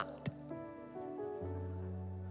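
Quiet background music of sustained, held chords, with a lower note coming in about one and a half seconds in.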